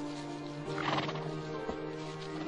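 A horse whinnies once, about a second in, with a short call that falls in pitch, and a single knock follows shortly after. Under it the film's background music holds sustained notes.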